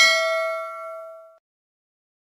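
A single bell ding: a bright chime struck at the start that rings out and fades away by about a second and a half in. It is the sound effect of a notification-bell icon being clicked.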